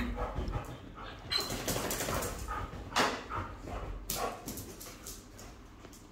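Airedale and Welsh terriers playing, with short scattered barks and yips; the sharpest sound comes about three seconds in.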